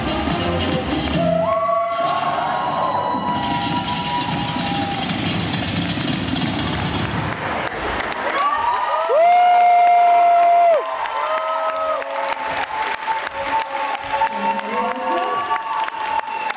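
Dance music playing, ending about halfway through, followed by an audience cheering with high-pitched children's shouts, one long loud shout held for about a second and a half.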